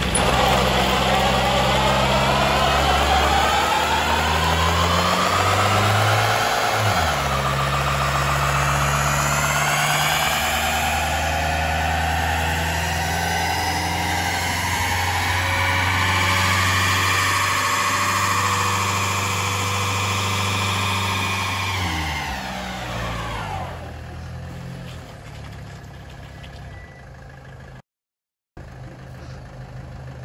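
Diesel London taxi engine held at high revs while a rear tyre spins on the tarmac in a burnout. The pitch climbs over the first ten seconds, holds, then falls away about 22 seconds in to a quieter idle. The sound cuts out for a moment near the end.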